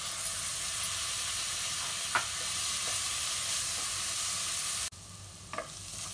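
Ginger-garlic paste sizzling in hot oil among frying onions as it is stirred in with a spoon. The sizzle drops suddenly about five seconds in.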